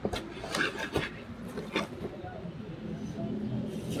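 A man reacting to a harsh shot of liquor: a few short sharp sounds early on, then a low, drawn-out groan of his voice near the end.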